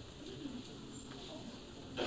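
Faint, indistinct voices of people talking in the room, under steady cassette tape hiss, with a short click right at the end.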